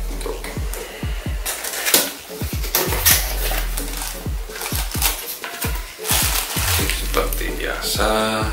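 Cardboard box flaps and plastic wrapping rustling and scraping as a boxed fishing reel is opened and a plastic-wrapped pouch is pulled out, mostly from about a second and a half in. Underneath runs background electronic music with a steady beat.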